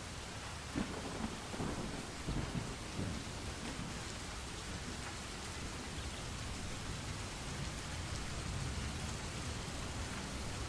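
Steady rain, with a roll of thunder rumbling in low about a second in and fading by three seconds.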